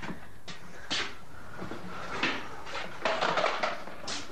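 A few separate knocks, then a short rattling clatter of small hits about three seconds in, as of household objects being handled.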